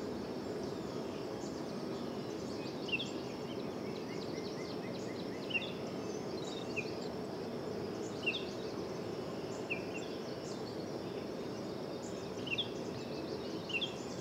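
Garden ambience: a steady background noise with small birds chirping in short, separate downward notes every second or so.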